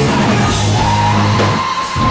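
Loud rock music with electric guitar and drum kit; a long high note is held from about a second in.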